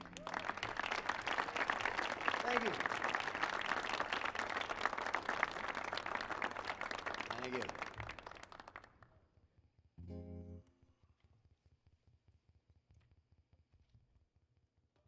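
Audience applauding with a few whoops as the song ends, the clapping dying away after about nine seconds. About ten seconds in comes a brief low hum-like note from the stage.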